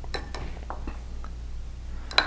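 A metal spoon scraping and lightly clinking against the inside of a coffee mug as thick batter is scooped, giving about five soft ticks spread over two seconds.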